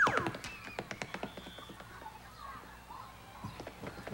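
Light, irregular taps and clicks, busiest in the first second and thinning out afterwards, with a short falling vocal sound at the very start.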